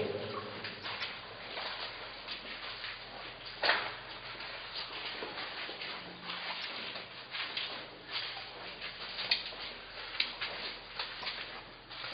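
Footsteps and scuffs on the rock floor of a narrow mine tunnel: scattered light knocks with one louder knock about four seconds in, over a faint steady low hum.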